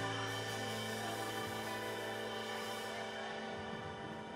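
Live bar band holding a long sustained keyboard chord with cymbal wash, slowly dying away at the close of a song.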